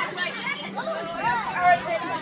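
Party guests chattering, voices overlapping in casual talk.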